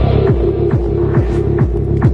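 Dark minimal tech-trance playing loud: a steady four-on-the-floor kick drum, a little over two beats a second, over a sustained bass drone.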